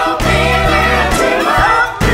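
Gospel choir and a lead singer singing over a band of piano, organ and drums.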